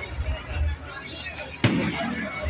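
A firework shell bursting overhead with one sharp bang about one and a half seconds in, sounding like a gunshot through a phone's microphone.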